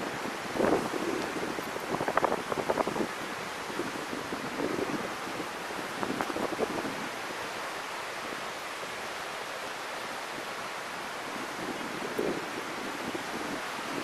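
Steady outdoor wash of wind and surf, with wind buffeting the microphone.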